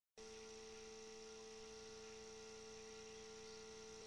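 Near silence with a faint, steady electrical hum made of several even tones.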